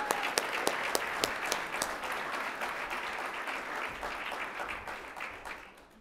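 Audience applauding, with sharp individual claps standing out at first, then fading away near the end.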